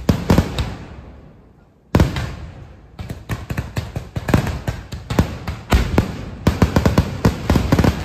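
Aerial fireworks bursting: a few sharp bangs right at the start, one big bang about two seconds in, then from about three seconds a rapid, uneven barrage of bangs, several a second.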